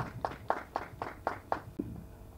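Hand clapping in a steady run of separate claps, about four a second, dying out shortly before the end.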